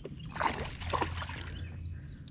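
A splash in the pond water about a quarter of a second in, followed by sloshing of water against the boat.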